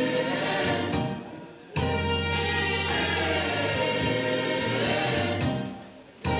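Gospel choir singing in harmony over a steady low bass accompaniment. The sound fades away twice for well under a second, about a second in and near the end, and comes straight back in.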